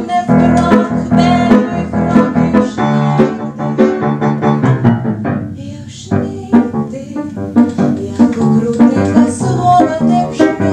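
A woman singing with upright piano accompaniment, the music dipping briefly just before the middle.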